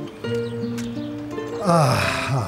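Soft background music of held, slowly changing notes. Near the end, a loud vocal sound slides sharply down in pitch.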